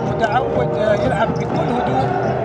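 A basketball being dribbled on a hardwood court during live play, under an excited male commentator's voice.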